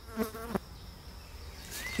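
Faint, steady high-pitched insect buzzing, with a brief low voiced murmur just after the start.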